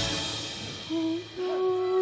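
A live band's final chord and cymbals ring out and fade at the end of a song, then a single steady note is held, briefly at first and then sustained from about halfway through.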